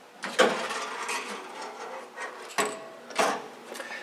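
Stainless steel sheet-metal front cover of an ozone generator cabinet being handled and lifted off: scraping and rattling metal, starting with a sharp knock, with further clanks about two and a half and three seconds in.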